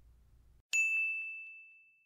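A single bright bell-like ding, struck a little under a second in and ringing out on one high pitch as it slowly fades.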